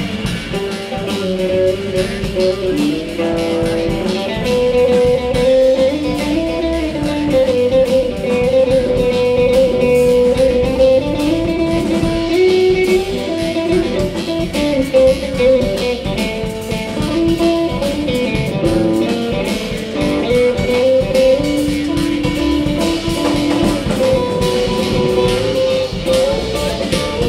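A live band playing, with a hollow-body electric guitar prominent and a long-held melody line moving slowly above the accompaniment.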